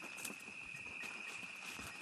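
Faint, steady, high-pitched insect trill of crickets in the night field, held unbroken, with a few soft ticks.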